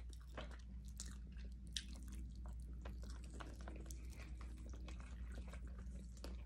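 A person chewing and biting into a chicken wing close to the microphone: faint, irregular little clicks of chewing over a low steady hum.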